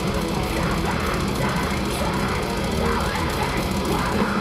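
Brutal death metal band playing live through a large outdoor PA: distorted electric guitars, bass and drums in one dense, loud, unbroken wall of sound, picked up by a camera microphone in the crowd.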